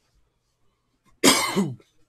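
A man's single short, loud cough about a second in.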